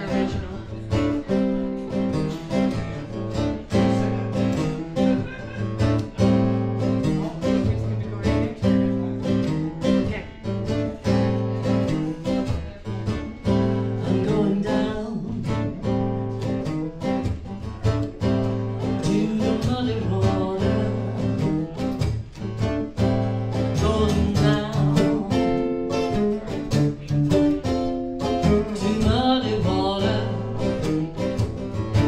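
Two acoustic guitars playing a blues tune together, strummed and picked in a steady rhythm.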